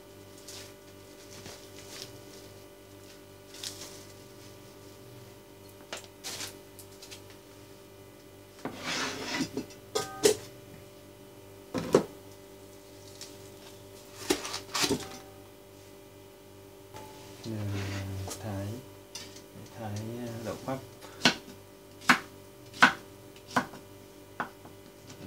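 Kitchen handling noises: knocks and a scraping clatter as minced pork is tipped and scraped from its plastic tray into a large pot. Near the end come a few sharp knocks of a knife chopping okra on a wooden cutting board. A steady low hum sits under it all.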